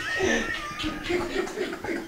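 People laughing: one voice gives a shrill, high-pitched squealing laugh that slides down in pitch over the first second, then breaks into short choppy laughs.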